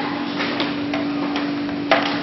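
A 3D transfer printing machine for shoe outsoles hums steadily while its hinged metal frame is handled, with light clicks and one sharp metal clank just before the end.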